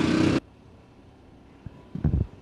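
A dirt late model race car's engine running flat out with its throttle hung open. The sound cuts off abruptly less than half a second in, leaving faint background noise with a couple of soft thumps near the end.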